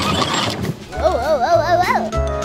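Children's background music with a steady beat, a short whooshing noise at the start, then about a second of a warbling, wavering voice-like sound effect that bends up and down in pitch.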